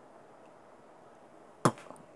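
Quiet room tone, then a single sharp click about one and a half seconds in, with a smaller one just after.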